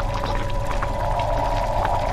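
Horror-film sound design: a steady, dense drone with a deep low rumble and scattered faint clicks, from a sequence about vomiting meant to make the listener feel uneasy and nauseous.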